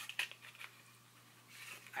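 A few faint clicks and taps in the first second as small boxed eyeshadow singles are handled.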